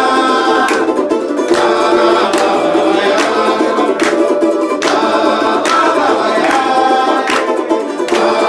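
A group singing samba together, accompanied by two strummed samba banjos (four-string banjo-cavaquinhos), with hand claps on the beat about once every 0.8 s.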